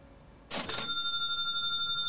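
Livestream donation alert sound: a sudden chime about half a second in, its several high tones ringing on steadily.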